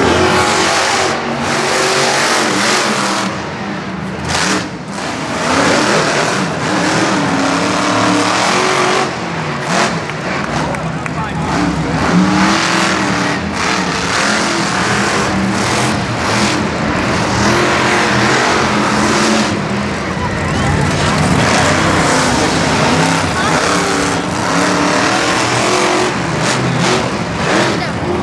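Monster truck engines revving loudly and continuously across the arena, their pitch rising and falling as the trucks accelerate and back off.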